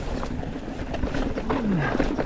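Mountain bike rolling down a dirt singletrack: a steady rumble of tyres on the trail and wind on the microphone, with scattered clicks and rattles from the bike. Near the end a brief low tone slides down in pitch.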